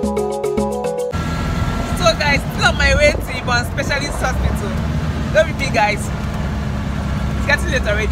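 Background music for about the first second, then it cuts to the low, steady rumble of an auto-rickshaw's engine heard from inside its cabin, with a woman's excited voice rising and falling over it.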